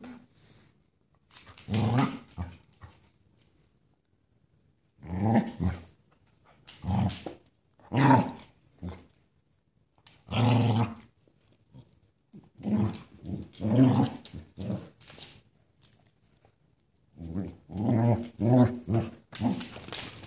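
Dog growling in play in repeated short bursts of about a second each, with a longer run of growls near the end. The dog is inviting another dog to a tug-of-war over a rope toy.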